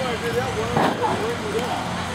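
Voices of the crowd around a wrestling ring, with one loud impact from the ring action about a second in.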